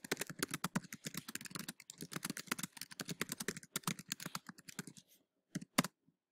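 Fast typing on a computer keyboard: a quick, uneven run of keystrokes for about five seconds, then a pause and two last clicks near the end.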